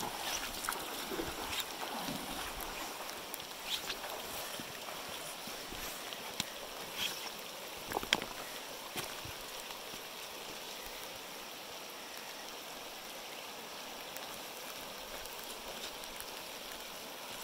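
Steady rush of a shallow river running over stones, with a few splashes and knocks in the first half as a wader steps out of the water onto the rocks, the sharpest about 8 seconds in.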